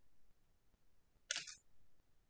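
A quick burst of sharp clicks about a second and a quarter in, over faint room tone.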